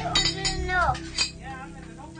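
Cutlery clinking against dishes during a meal, a few sharp clinks with the loudest a little after a second in. A voice is heard briefly in the first second, over steady background music.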